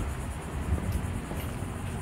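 A steady low background rumble with a couple of faint ticks.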